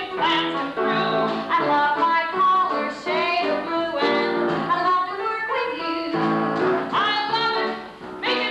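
Women singing a musical-theatre song over instrumental accompaniment.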